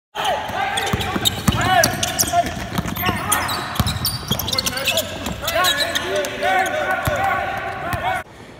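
Basketball practice on a hardwood court: a ball bouncing several times, sneakers squeaking in short chirps, and players' voices calling out.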